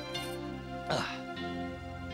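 Background score of soft, held tones, with one short burst of a voice, a brief laugh, about a second in.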